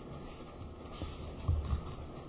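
Low room noise with a steady low rumble, and a short, soft low thump about one and a half seconds in.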